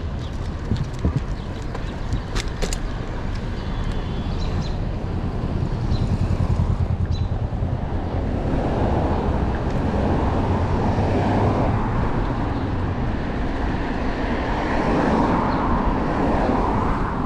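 City street traffic heard from a moving bicycle, with a steady low wind rumble on the microphone. A few sharp clicks come in the first few seconds. From about halfway the road noise grows louder and stays even.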